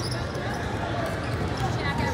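Basketballs bouncing on a hardwood court, with scattered short thuds, over the background chatter of a busy gym.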